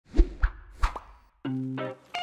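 Short intro jingle for an animated logo: three punchy pops in the first second, then a brief held synth chord about a second and a half in that cuts off just before the end.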